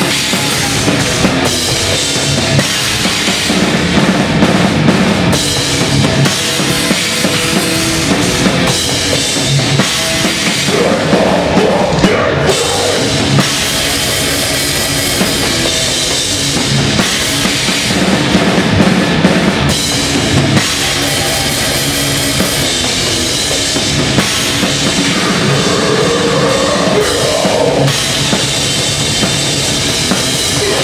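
Death metal band playing live, picked up from the drum riser: a drum kit with kick drum and cymbals loud and close, over distorted electric guitars.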